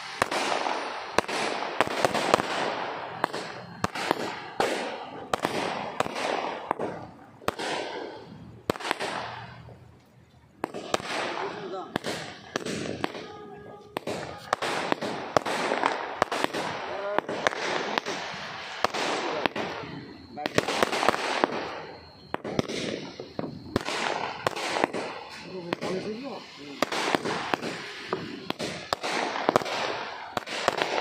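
Cock brand 'Little Bees' 50-shot aerial firework going off shot after shot: a rapid run of sharp cracks and pops, several a second, with a short lull about ten seconds in.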